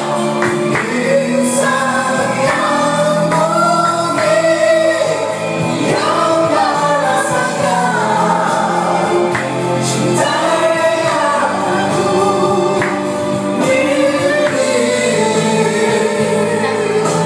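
A man singing a song through a karaoke microphone over its backing track, in long, gliding held notes.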